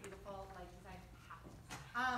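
A faint, indistinct voice speaking a few quiet words, with a wavering pitch.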